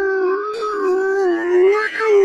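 A long, unbroken howl held on one slightly wavering pitch.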